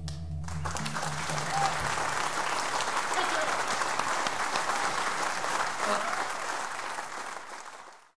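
Audience applauding at the end of a live song, rising within the first second and fading away near the end. The last low sustained note of the music dies out under the clapping about two seconds in.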